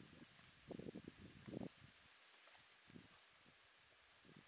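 Near silence: faint outdoor ambience, with a few soft, low thumps about a second in.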